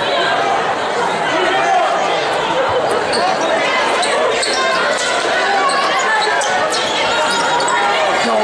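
Crowd voices in a gymnasium, with a basketball being dribbled on the hardwood court during live play, all echoing in the large hall.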